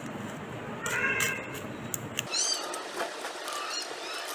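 A metal spoon scraping and clicking through crumbly, hard-set fudge in a paper-lined box. An animal calls about a second in, followed by several short, high, arching calls in the second half.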